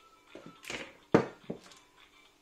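A silicone spatula scraping and knocking against a stainless steel mixing bowl as the last batter is scraped out, and the bowl set down on the worktop: a few short knocks, the sharpest and loudest just over a second in.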